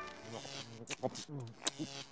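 Faint, muffled voices talking, with a low steady buzz underneath.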